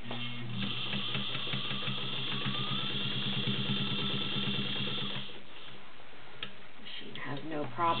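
Belt-driven White Model 265 sewing machine with its 1.3-amp motor, running and stitching steadily through 14 layers of cotton: a fast, even needle-and-feed rhythm over the motor's hum, which stops about five seconds in.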